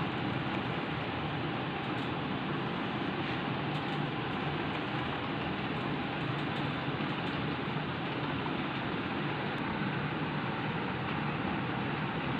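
Steady background noise: an even hiss and low rumble that holds at one level throughout, with no voice.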